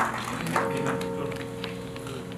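Scattered hand claps from a seated audience tapering off. About half a second in, a steady held tone starts and continues under faint room noise.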